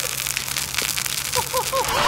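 A lit fuse crackling and fizzing in the moment before ignition, with a few brief high squeaks near the end.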